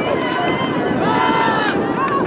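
Players and sideline spectators shouting and calling out during play, over steady background noise, with one long drawn-out call about a second in.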